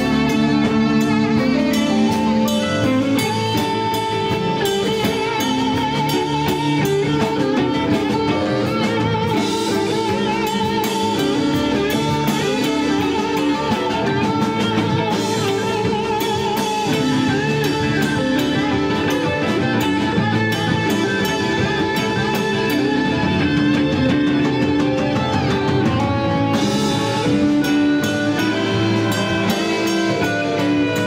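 Live rock band playing: a sustained electric guitar lead with wavering, bent notes over a drum kit with busy cymbals.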